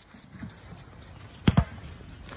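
Two heavy thumps in quick succession about one and a half seconds in, over a low outdoor rumble.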